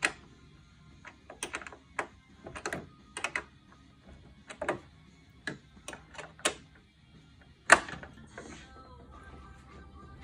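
Small 8 mm wrench clicking against a fastener and the surrounding metal, in short irregular clusters of clicks, with one sharp, loudest click about three-quarters of the way in.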